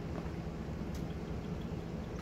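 Vehicle engine idling with a steady low hum, and one brief click about a second in.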